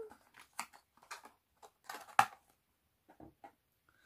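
Light clicks and taps from a small glass perfume bottle and its packaging being handled, the sharpest click about two seconds in.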